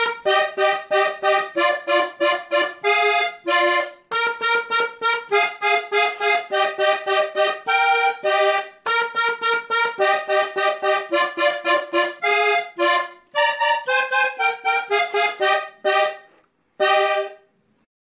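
Three-row diatonic button accordion playing a vallenato melody slowly: a run of short detached notes and chords on the treble buttons, with brief pauses, ending on a last note shortly before the end.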